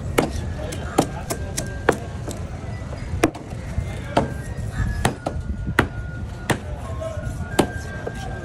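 A large curved chopping knife striking and cutting a whole fish against a wooden cutting board: sharp knocks at irregular intervals, roughly one or two a second, over a steady low rumble.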